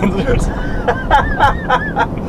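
Young men talking and laughing, with quick repeated laugh bursts in the second half, over a steady low background rumble.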